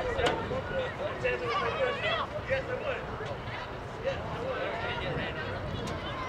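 Voices calling out across an outdoor soccer field during play, short shouts over a steady open-air background noise.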